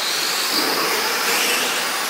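Several 1/10-scale 4WD short course RC trucks racing on a dirt track: the steady whine of their electric motors over a hiss of tyres on dirt, with a high whine that rises and then falls.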